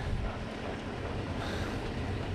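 Steady low background noise with no distinct event.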